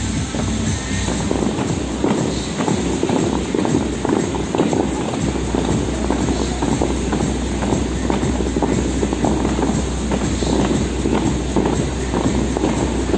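Bellagio fountain water jets spraying and crashing back into the lake, a loud dense rushing splash with rapid irregular pattering, with the show's music playing along.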